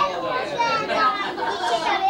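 Chatter: several voices talking over one another, with no single clear speaker.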